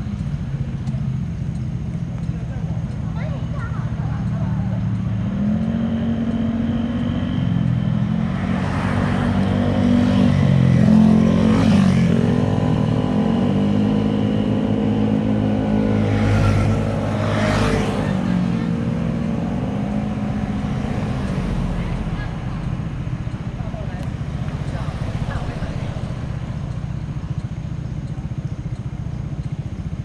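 Passing traffic on a mountain road: a steady engine drone that swells twice near the middle as vehicles go by close to the roadside, with a rush of tyre and wind noise at each pass, then fades back to a steady hum.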